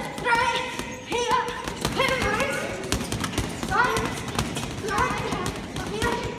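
Boxing gloves thudding on heavy punching bags in an irregular run of blows, with children's voices calling out over them.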